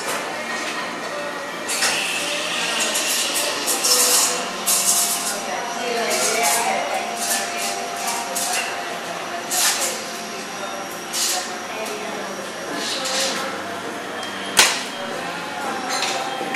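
Coffee shop background: people talking, cups and dishes clinking, and short bursts of hiss, with one sharp click near the end.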